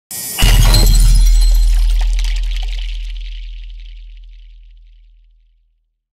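Intro sound effect: a brief rush, then under half a second in a heavy crash with crackling highs over a deep boom. The crackle dies away within about three seconds and the boom fades out slowly over about five.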